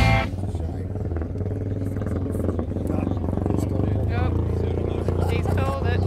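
Vintage pre-1940 motorcycle engine running as the bike rides across the salt flat, a steady low drone, with people talking in the background.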